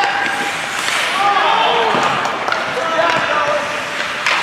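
Spectators in an indoor ice rink shouting and calling out during play, with sharp knocks of hockey sticks and puck on the ice and boards.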